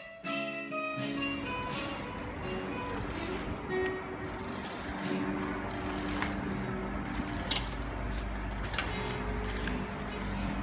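Acoustic guitar music with plucked notes. From about a second in, a steady low background rumble runs under it, with a few sharp clicks.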